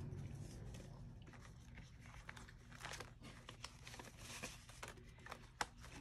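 Faint rustling and crinkling of paper banknotes being handled and counted by hand, in short scattered rustles and soft clicks.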